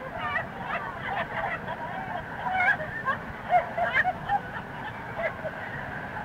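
A busload of people laughing, many voices at once, on a lo-fi cassette recording made on the bus.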